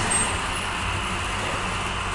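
HO scale model passenger train running along the layout's track, a steady rolling hum and rumble from its motor and wheels on the rails.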